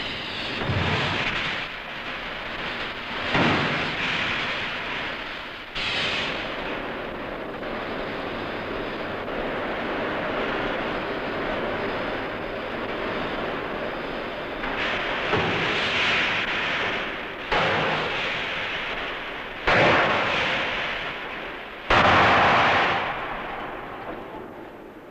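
Drop hammer forging a red-hot blank into a jet-engine compressor wheel disc: heavy blows, each starting sharply and dying away slowly. Three blows come in the first six seconds, then a long stretch of steady rushing noise, then three more blows in the last nine seconds.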